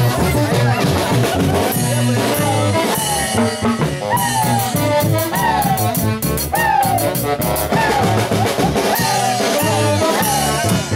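Huaylas band music: wind instruments play a melody of repeated falling phrases over a steady drum-kit beat.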